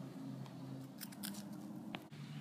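Dry leaf litter and twigs crackling as toy horse figures are moved over them: a quick cluster of sharp crackles about a second in and one more near the end, over a faint steady low hum.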